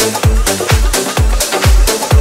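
House DJ mix playing through the club system: a steady four-on-the-floor kick drum at about two beats a second, with hi-hats and percussion over it.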